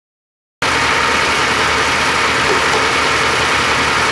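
Multi-wheel grinding and polishing machine in a knife shop running steadily, a loud even mechanical whir from its motor and spinning wheels. It comes in abruptly about half a second in.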